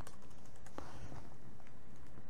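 A few light keystrokes on a computer keyboard as a short word is typed, over a steady faint background hiss.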